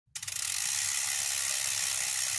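A steady, high-pitched mechanical ratcheting buzz that opens with a few quick clicks.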